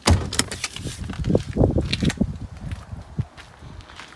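BMW Z4 bonnet release lever pulled, a sudden clunk right at the start, followed for about two seconds by footsteps and low knocks and clicks of handling.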